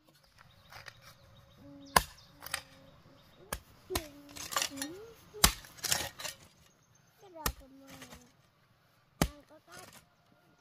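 Metal hoe blade chopping into loose soil: about six sharp strikes at uneven intervals, the loudest around two seconds in and halfway through.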